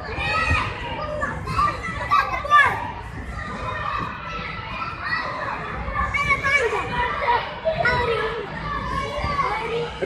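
Many children shouting, calling and chattering at once while they play, high voices overlapping throughout with no single speaker standing out.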